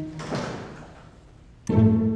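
Background score of low strings. A soft noisy swell fades out over the first second, then after a short lull a new low string note comes in loudly near the end.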